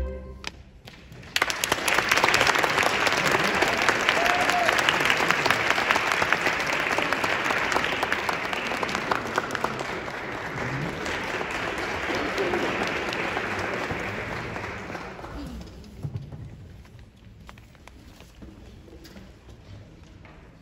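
A string orchestra's final chord cuts off right at the start. About a second later the audience applauds, holding steady for about fourteen seconds before dying away.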